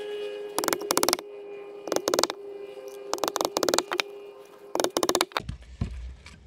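Steel claw hammer driving nails through a small wooden block into a rough-sawn board, in four groups of quick blows a little over a second apart.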